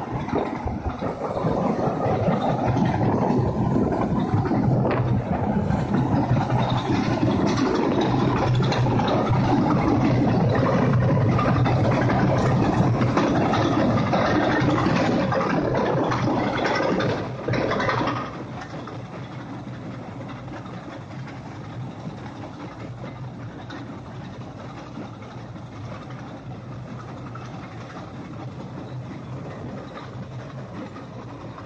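Tesmec TRS1675 tracked trencher cutting a trench through gravelly, rocky ground: a steady heavy diesel engine hum under the dense grinding noise of the cutter working the soil. The sound is loud until about eighteen seconds in, then drops to a lower, steady level.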